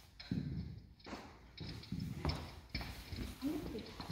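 Footsteps on a wooden floor, a handful of hard steps at walking pace. A brief murmur of a voice comes near the end.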